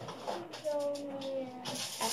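A person's voice holding a drawn-out sound whose pitch falls slowly, followed by a short hiss near the end.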